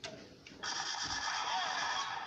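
A click, then playback from a small device speaker starting about half a second in and running on steadily: the start of a music video or the ad before it.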